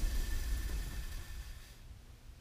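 A 240 V HVAC blower motor and its squirrel-cage wheel coasting down just after being switched off: a low rumble and a faint whine fade away over about two seconds.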